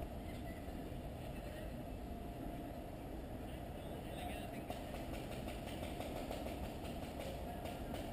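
Faint distant voices over a low, steady rumble.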